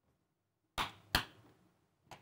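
Near silence, then two sharp clicks about a third of a second apart, just under a second in.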